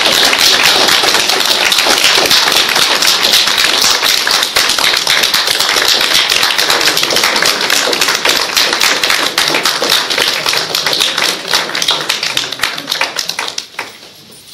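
Audience applauding loudly, the dense clapping thinning into scattered claps and stopping near the end.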